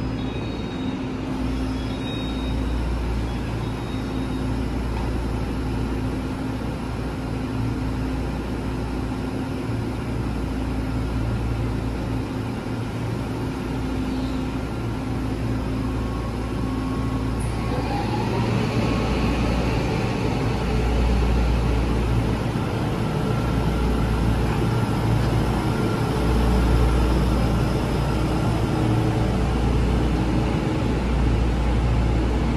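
An EMU3000 electric express train standing at the platform with a steady equipment hum, then pulling away a little past halfway, its running noise growing louder as it gathers speed.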